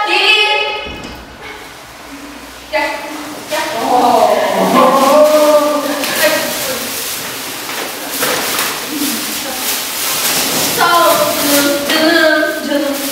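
Several girls' voices talking, with plastic carrier bags rustling and light thumps as a group walks in and hands the bags over. The rustling is densest in the second half.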